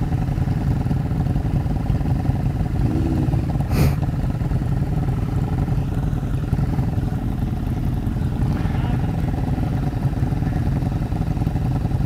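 Motorcycle engines idling steadily while the bikes stand waiting, with a short knock about four seconds in.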